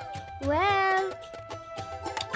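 Cartoon background music with held notes. About half a second in comes one short voiced call from a character, rising in pitch and then held, like a quizzical "hmm?" or a cat-like meow.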